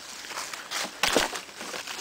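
Dry twigs and forest-floor debris crunching and rustling as an old weathered board is lifted off the ground, with a knock about a second in.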